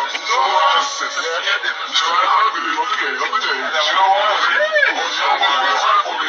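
Party audio picked up on a phone: music playing with voices singing and talking over it, tinny and without bass.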